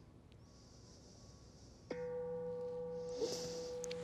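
A meditation bell struck once about two seconds in, ringing on with a steady low hum and several clear higher tones: the signal that the five-minute yin hold is over.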